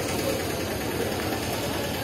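Steady, even background noise of an open-air market yard, with no single sound standing out.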